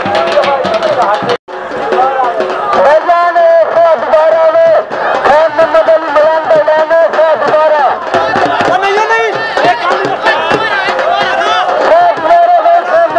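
A loud voice with long, drawn-out held tones, half-chanted, over crowd chatter. The sound breaks off abruptly for a moment about one and a half seconds in.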